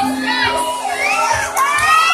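Audience cheering and shouting, many voices at once with calls rising in pitch.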